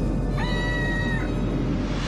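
A dinosaur cry sound effect: one high, pitched screech lasting under a second, over a low rumbling music bed.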